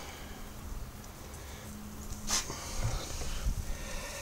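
Chilled wort running from a silicone hose into a plastic fermenter bucket, with a sharp click a little over two seconds in. After the click the flow grows louder and more uneven.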